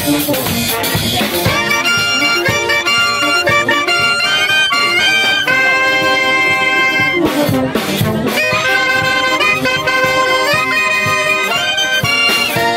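A live brass band playing a cumbia medley: clarinets, saxophones and brass play the melody in sustained notes over congas and a drum kit keeping a steady beat.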